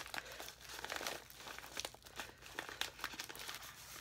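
The wrapping of a mailed package crinkling as it is handled and turned over, with many short, irregular crackles.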